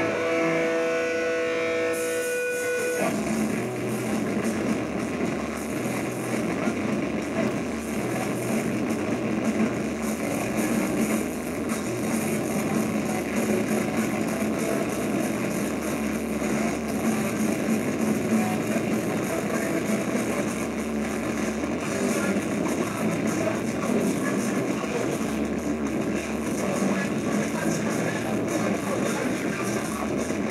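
Live rock band playing: a few held electric guitar notes ring for about three seconds, then the full band comes in, with distorted guitars, bass and drums playing loudly and without a break.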